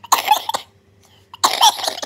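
A woman coughing in two harsh bursts about a second apart, each about half a second long: a cough from cystic fibrosis.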